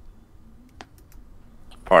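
A few faint, sparse clicks over low room hum, then a voice begins near the end.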